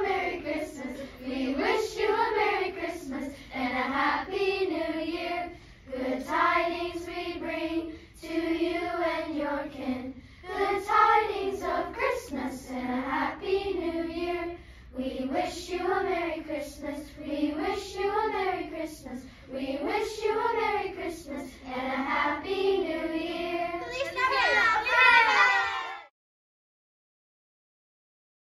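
A group of children singing together as a choir, in phrases of a second or two with short breaths between them. The singing grows louder and higher in the last couple of seconds, then cuts off suddenly.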